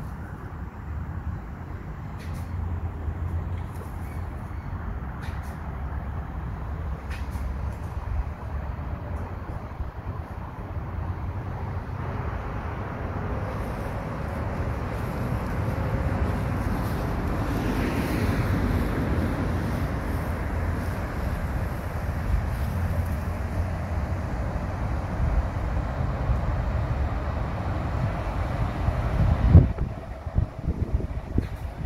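Low outdoor rumble that swells for several seconds around the middle, with a few faint clicks early on.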